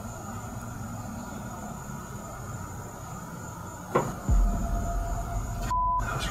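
Quiet background hiss, then a single sharp knock about four seconds in, followed by a low rumble.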